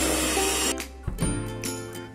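Electric hand mixer beating egg yolks into a creamed base, cutting off suddenly under a second in. Light plucked-string background music carries on after it.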